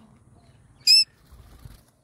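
A cockatiel gives a single short, high, piercing call about a second in.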